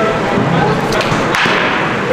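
A softball in play in a batting cage: a light knock a little before one second, then a sharper knock about one and a half seconds in, followed by a brief rush of noise.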